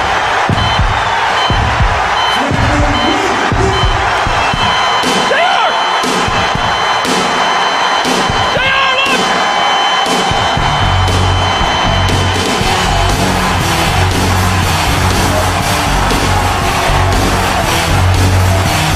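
Arena crowd cheering and yelling, with a faint regular beat building underneath; about ten seconds in, heavy rock wrestling entrance music comes in with a pounding bass beat.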